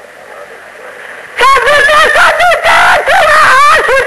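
A solo voice singing a Sindhi naat (devotional song) with wavering, ornamented pitch, coming in loud about a second and a half in after a brief quiet pause.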